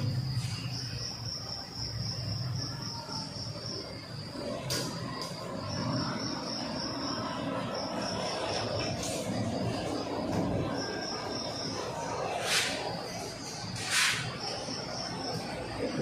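Insect trilling: a steady high-pitched note that comes and goes in stretches of a second or two, over low room hum. A few brief sharp noises break in, the loudest two near the end.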